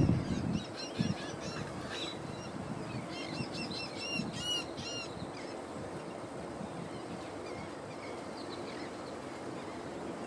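A bird calling in two quick runs of nasal, repeated notes, the second run about three seconds in and the strongest, with a few faint notes later. Low thumps sound near the start over steady background noise.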